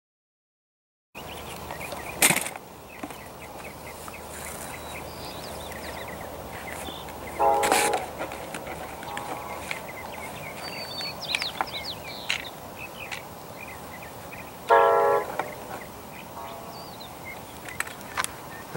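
Distant train horn sounding two short blasts about seven seconds apart, each answered a moment later by a fainter echo.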